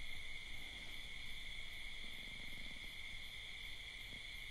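A faint, steady, high-pitched whine of two held tones over a low background hum.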